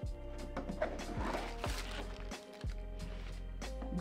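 Background music over the rustle of a cardboard box being opened and its paper wrapping handled, with a few light knocks and a longer stretch of rustling about a second in.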